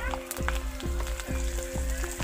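Phool pitha (flower-shaped rice cakes) sizzling as they deep-fry in hot oil in a karahi. Background music with a steady beat plays underneath.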